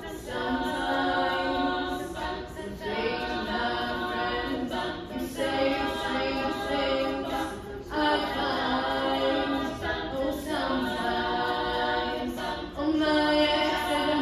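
Female a cappella group singing in close harmony, a lead voice over the group's sustained backing chords, which change every two to three seconds.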